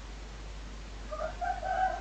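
A rooster crowing faintly in the background: one drawn-out crow starting about a second in, over a steady low hiss.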